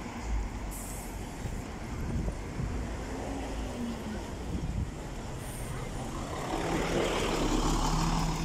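Busy city-street traffic with cars passing, and short high hisses about a second in and again near the middle. Near the end a city bus's engine hum grows louder close by.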